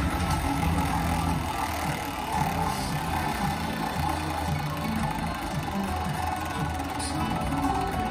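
Electronic slot machine game music with a low, moving bass line, running steadily over casino floor noise.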